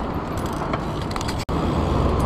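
Steady rolling noise of a BMX bike ridden along a city street, with light rattling clicks and passing traffic. A brief gap about a second and a half in, where the sound cuts out and comes back a little heavier in the low end.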